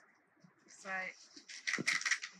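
Paper seed packet rustling as wildflower seeds are shaken out of it into a glass jug, with a short flurry of crisp rustles and clicks near the end.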